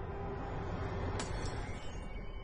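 Film soundtrack: a low rumbling drone, with a sudden sharp crash a little over a second in, followed quickly by a second, smaller hit and a bright high ring that fades within about half a second.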